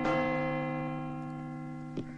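A large hanging metal bell, struck once just before, ringing on with several steady tones and slowly fading.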